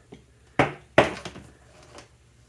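Two sharp knocks, about half a second apart, from the lamp cord and hands handling a stained-glass pendant shade.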